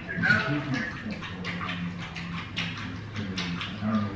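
Muffled voices coming through a phone on speakerphone, the other end of a call, over a low steady hum.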